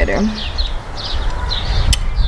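Small birds chirping in quick, repeated short notes over a steady low rumble, with a single sharp click near the end.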